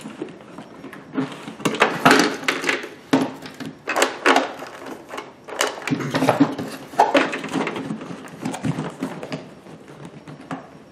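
Hard-shell carry-on suitcase being handled: irregular knocks, clacks and rustles as the lid is opened, a packed sewing machine is shifted inside, and the lid is shut again.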